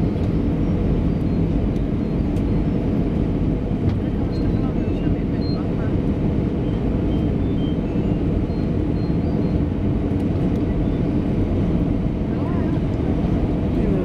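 Steady noise inside an airliner cabin on final approach: the turbofan engines and the rush of air past the fuselage, an even low rumble.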